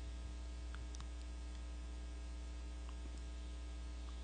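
Steady electrical mains hum, with a few faint ticks about a second in.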